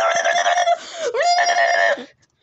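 A high-pitched voice screaming: one long held scream, a short downward break about a second in, then a second held scream that cuts off near the end.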